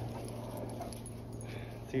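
Several dogs sniffing and digging at a hole in soft dirt: quiet, even scuffing with no clear barks.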